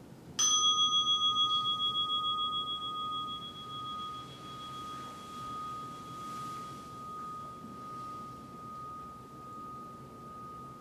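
A meditation bell struck once, ringing out with a long, slowly pulsing decay that is still sounding at the end; it marks the close of the 30-minute sitting.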